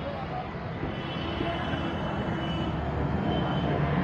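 Steady vehicle traffic noise, slowly growing louder.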